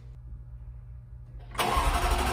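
A low steady hum, then about one and a half seconds in the Jaguar F-Type R's starter begins cranking its supercharged 5.0-litre V8 for a cold start.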